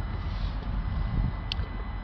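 Steady low background rumble with one light, sharp plastic click about one and a half seconds in, as a hand works the loose joint of the plastic air intake duct.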